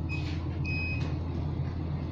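Steady low hum with two high-pitched electronic beeps in the first second, the second one longer, about half a second.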